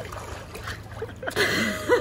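Swimming-pool water splashing and lapping around a swimmer at the pool edge, with a breathy rush past the middle, then a woman breaking into laughter near the end.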